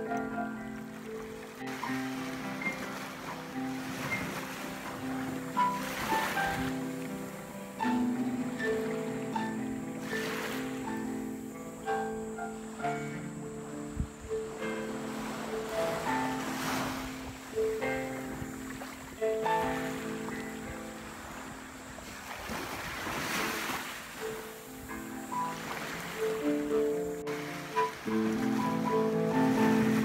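Solo piano improvising slow, sustained chords and single notes, over ocean waves that swell and wash ashore every few seconds.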